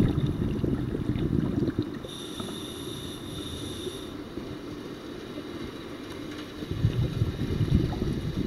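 Low rumbling water noise on an underwater camera housing, loudest in the first two seconds and again near the end. A high steady whine is also heard for about two seconds in the middle.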